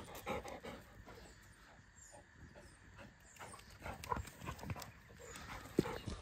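Two black dogs close by on block paving, panting and moving about. The sound is faint, with scattered small clicks.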